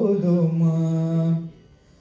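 A man sings solo into a microphone, holding one long, steady low note that ends about one and a half seconds in, followed by a short pause for breath.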